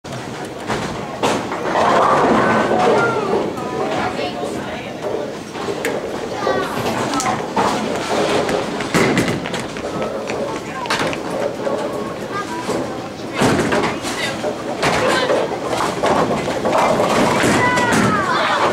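Busy bowling alley: voices of children and adults chattering, with a few sharp knocks of bowling balls and pins.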